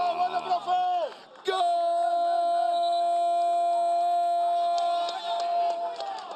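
A football commentator's drawn-out celebratory call: the voice slides down in pitch, breaks off about a second in, then holds one long, steady note for about three and a half seconds.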